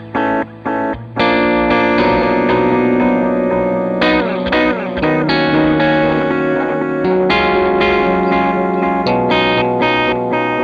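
Electric guitar played through a delay pedal. It opens with a few short, choppy chords in the first second, then sustained chords whose echoes repeat and overlap, with a slight wobble in pitch about halfway through.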